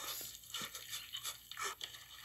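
Faint, irregular crunching and squishing of raw turkey flesh being mashed and torn apart by a gloved hand.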